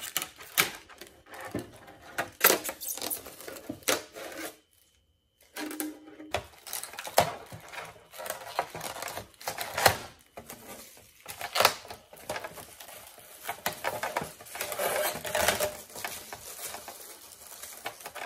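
Thin clear plastic crinkling and crackling in the hands as a protective film piece is peeled off a clear plastic RC truck interior, in irregular clicks and crackles with a short pause about five seconds in.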